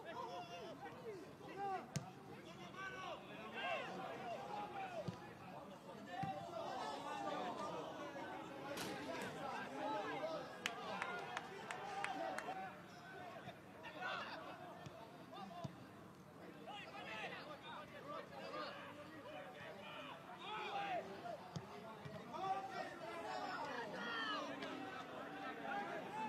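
Footballers and coaches shouting and calling to one another on the pitch, carrying across a stadium with no crowd noise, with a few sharp thuds in between.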